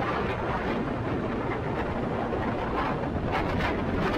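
Wind gusting across the camera microphone on an exposed mountain ridge, a loud, heavy rush of wind noise.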